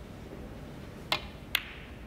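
Two sharp clicks about half a second apart: a snooker cue tip striking the cue ball, then the cue ball striking the green, the second click louder with a brief ring.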